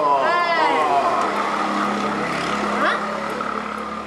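A motor engine's steady hum that slowly fades, with a short spoken phrase at the start and a brief exclamation near the end.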